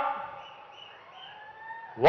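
A pause in a man's speech through a public-address system: the echo of his amplified voice dies away over about half a second, leaving faint background noise with a few short high chirps and a faint rising whistle.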